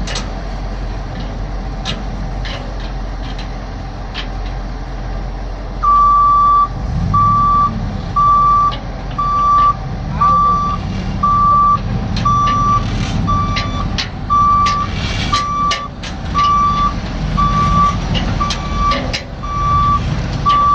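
Chevrolet C7500 dump truck's 8.1-litre V8 gas engine running, then about six seconds in its backup alarm starts beeping steadily, about one beep a second. The engine rumble grows louder as the truck reverses, with a few sharp clicks scattered through.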